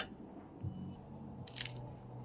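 Biting into a slice of bread dipped in fish soup and chewing it, with one short crunch of the crust about one and a half seconds in.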